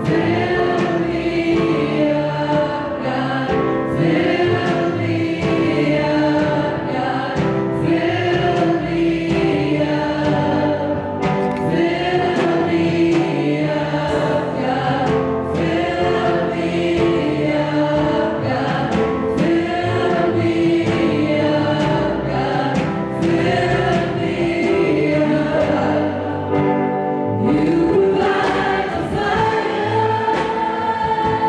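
Gospel worship song sung by a small group of mixed voices on microphones, a woman's lead with backing vocals, over a live church band with drums.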